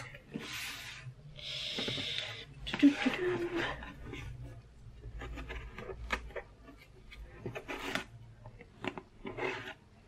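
Scissors cutting the packing tape on a cardboard box, the blade drawn along the tape seam in a couple of rasping strokes, followed by small clicks and knocks as the box is handled.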